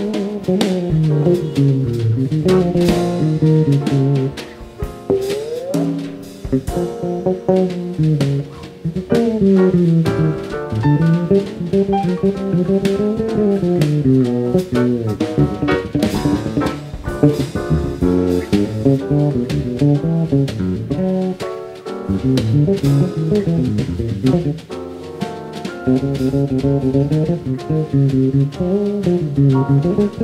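Electric bass guitar playing a fast, winding jazz solo in phrases with short breaks, with light drum-kit accompaniment on cymbals behind it.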